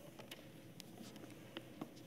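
Near silence in a quiet room, broken by a few faint, separate clicks and light handling sounds of things being set out at a wooden pulpit.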